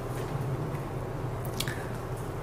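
Steady low background hum with a faint steady tone and a few faint clicks, the sharpest about one and a half seconds in.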